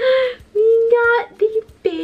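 A woman's high sing-song vocalizing: three or four short held notes with brief breaks between them, no clear words.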